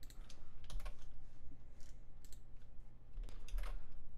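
Computer keyboard keys and mouse buttons being clicked in an irregular scatter of short taps, over a low steady hum.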